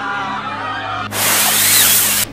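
Background music with a low steady drone. About a second in, a loud, even hissing whoosh comes in and runs on until it cuts off suddenly.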